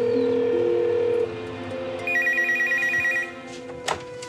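Telephone ringing with an electronic trilling ring in two bursts, over sustained background music. A sharp click near the end as the handset is picked up.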